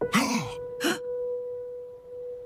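Two short breathy vocal sounds from a cartoon character in the first second, followed by a single sustained tone in the music score, held steady.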